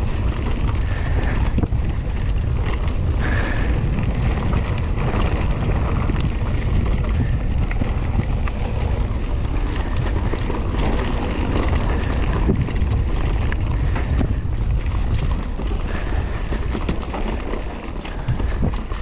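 Mountain bike being ridden over a loose dirt trail: a steady rumble of wind on the camera microphone and tyres rolling on the dirt, with scattered clicks and rattles from the bike.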